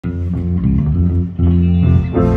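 Electric bass guitar playing a line of low, held notes at the start of a band's song, with a new note coming in a little past halfway.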